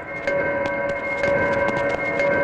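Film background score: a held electronic chord with quick, steady percussion ticks, about four or five a second.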